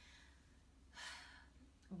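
A woman's single faint breath about a second in, lasting about half a second, in an otherwise near-silent pause.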